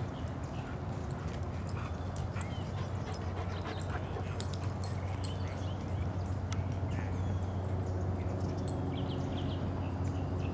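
Scattered crunching clicks, like footsteps on a leaf-strewn dirt path, over a steady low hum. A few short high chirps come about two seconds in and again near the end.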